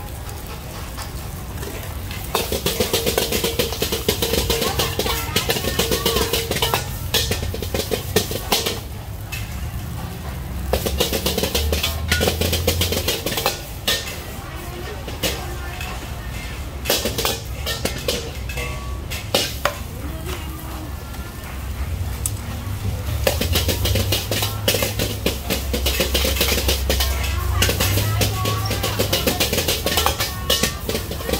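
Metal ladle scraping and clanking irregularly against a wok while fried rice sizzles over a high gas flame, with the burner's low steady rumble underneath.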